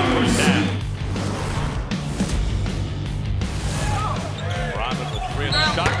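Basketball game sound: a ball bouncing on the hardwood court, with music and crowd noise behind it.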